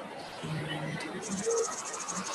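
Crickets chirping: a rapid, evenly pulsed high trill that starts about a second in.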